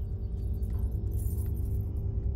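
Low, steady drone of film background score with a soft metallic jingle in the first half.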